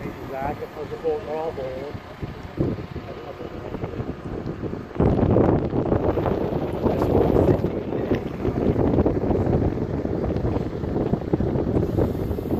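Wind buffeting the microphone, a gusty rumble that turns suddenly much louder about five seconds in.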